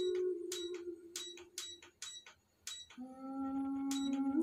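A soft lullaby playing through the Bluetooth speaker of an Astomi Sound aroma diffuser. A long held tone slides a little lower and fades out about two seconds in, with light clicks over it. After a brief gap a lower held note comes in about three seconds in.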